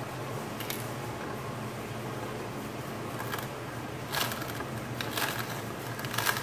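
Tribest slow masticating juicer running with a steady low motor hum. A few brief knocks and crackles come over it, the strongest about four and five seconds in, as a celery stalk goes into the feed chute.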